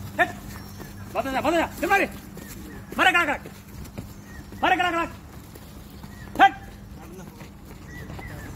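Short loud vocal calls, about seven at irregular intervals, each arching up and down in pitch; the last, a little over six seconds in, is the sharpest and loudest.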